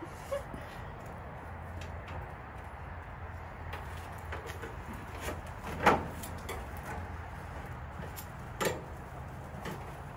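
Utensils knocking and scraping against a grill's cooking grate as a whole smoked turkey is rotated: one sharp clank a little past the middle and a lighter knock near the end, with a few faint clicks, over a steady low rumble.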